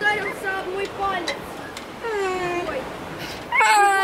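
A toddler boy crying after hitting his face: short wailing cries, then a long, steady, high wail that starts near the end. The blow has split his lip.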